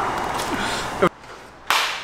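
A man's laughter trailing off, then a single sharp crack like a slap or snap about a second and a half in, ringing briefly in the room.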